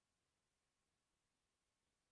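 Near silence: a faint, even noise floor, with nothing else heard.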